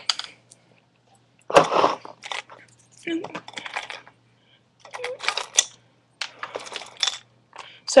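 Small metal jewelry pieces clinking and rattling in several short bursts as they are rummaged through in a container, with some quiet murmured speech.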